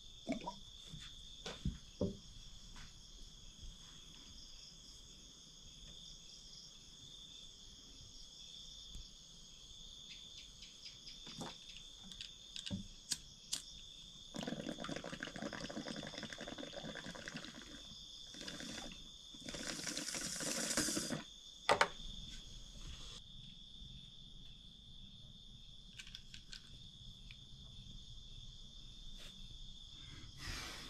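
Water bubbling in a bamboo water pipe as smoke is drawn through it, in two spells: about three seconds around the middle, then a shorter one a few seconds later. A steady high chirring of crickets runs underneath, with a few light knocks near the start.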